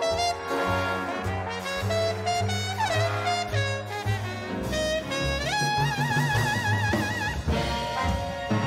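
Jazz big band playing a swing tune live: saxophones, trombones, trumpets, bass and drums. Over it, a trumpet worked with a hand-held mute plays a solo line. In the second half it holds one high note with a wide, wavering vibrato.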